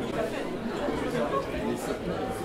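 Indistinct background chatter of many people talking at once, with no single voice standing out.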